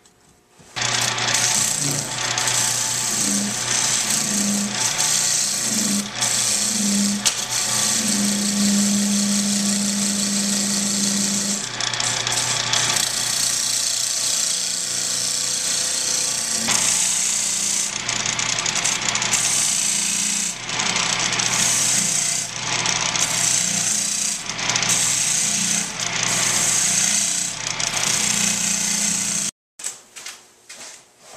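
Wood lathe running while a hand-held turning tool cuts into the spinning walnut burl blank: a loud, rough cutting hiss over the steady hum of the lathe motor. It starts about a second in, dips briefly now and then as the tool comes off the wood, and cuts off just before the end.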